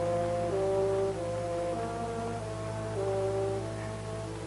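Background music from a drama score: a slow melody of long held notes stepping up and down, over a steady low hum.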